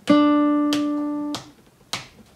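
A single D plucked on a nylon-string classical guitar, held for two beats and then muted abruptly: a half note cut short for a rest. Sharp clicks keep the beat, one while the note rings, one as it stops and one more near the end.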